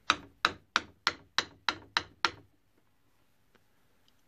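Steel hammer striking enamelled copper jump rings on a hard surface to flatten them: about eight sharp, even strikes, roughly three a second, stopping a little over two seconds in.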